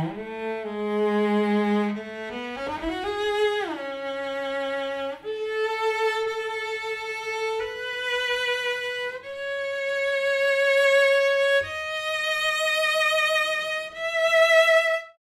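Solo cello playing a slow melody of long held notes that climbs gradually higher, with a sliding rise and fall about three seconds in.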